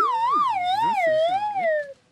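A comic sound effect: a whistle-like tone that wavers up and down about twice a second while sliding steadily down in pitch, then stops just before the end, with a voice faintly underneath.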